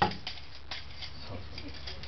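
A hard plastic toy knocked once against a wall, a sharp tap right at the start, followed by a few faint clicks as it is handled, over a low steady room hum.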